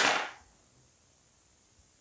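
A single sharp swoosh right at the start, fading away within about half a second.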